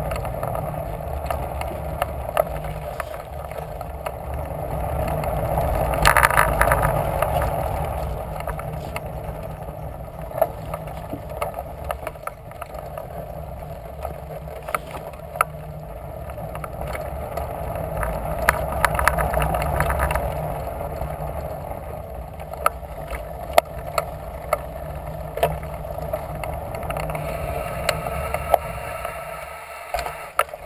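Bicycle rolling along a wooden boardwalk: a steady rumble from the tyres on the planks, with frequent small clacks and rattles. The rumble swells twice and drops away just before the end, as the bike comes off the boardwalk onto a dirt trail.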